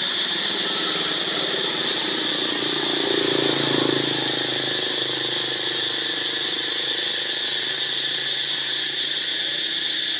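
A steady, high-pitched drone of forest insects. Under it, a low hum swells and fades about three to four seconds in.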